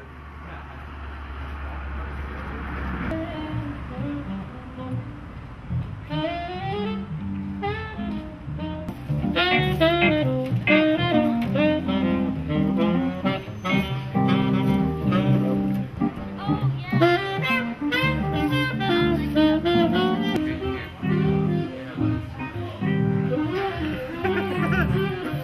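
Live jazz played by a small band led by a saxophone, with keyboard accompaniment. The music is faint and muffled at first under a low hum and murmur, comes in clearly about six seconds in, and is loud from about nine seconds on.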